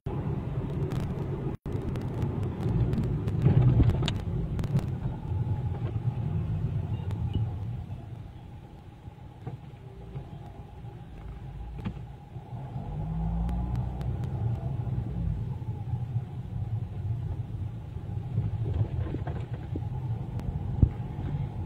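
Car engine and road rumble heard from inside the cabin while driving. There are a few clicks in the first seconds, and it goes quieter about eight seconds in. Around thirteen seconds in it swells again with a brief rising engine note as the car speeds up.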